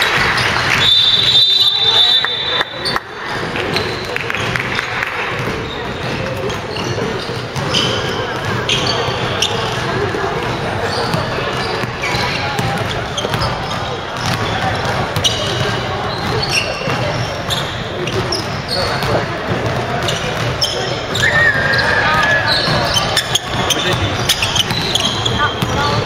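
Basketball game in a gymnasium: a basketball bouncing on the hardwood floor and sneakers giving short high squeaks, over players' shouts and chatter echoing in the hall.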